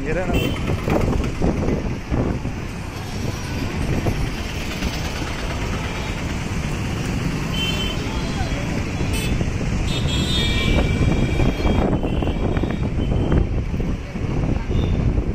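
Busy street traffic of motorbikes and auto-rickshaws, with people talking nearby and short horn toots, several of them in the second half.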